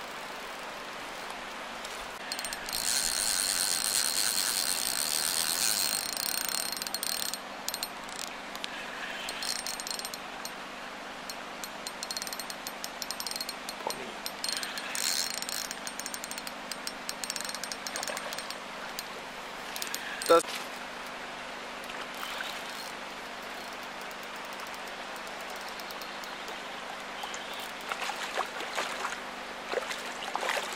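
Spinning reel being cranked to retrieve line, its gears whirring in several spells, the longest and loudest near the start. A single sharp click about twenty seconds in, and splashing near the end.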